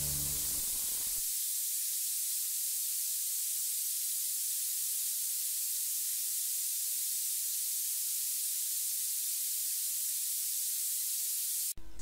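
The last notes of a song die away in about the first second, leaving a steady high-pitched hiss: the recording's own noise between tracks, with no music playing.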